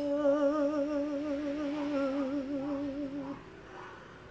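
A woman's unaccompanied voice holding the song's long final note with a slow, even vibrato, the pitch sinking slightly, until it ends a little over three seconds in.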